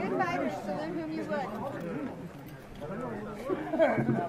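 Several people talking at once: background chatter of voices, with no clear blows landing.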